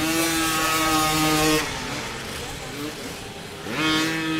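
Small two-stroke youth motocross bike engine at high revs, held steady for about a second and a half, then backing off. It revs up sharply again near the end.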